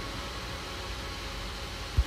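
Steady low hiss and rumble of background noise, with no music, and a short low thump right at the end.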